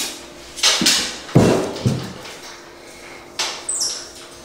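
A metal wire-shelf closet wardrobe frame knocked in a few separate thumps, with a short clatter near the end, as a white-faced capuchin monkey jumps and climbs on it.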